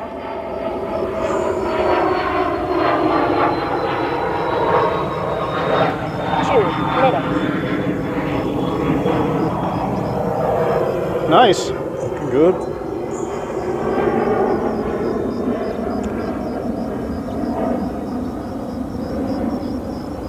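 Twin electric motors and propellers of an E-flite EC-1500 radio-controlled cargo plane making a pass: a steady droning hum with a faint high whine that slowly drops in pitch over the first half.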